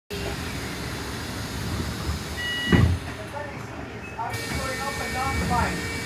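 Steady rumble of a moving bus heard from inside the passenger saloon. About two and a half seconds in, a short two-tone beep is followed at once by a loud thump; voices follow later.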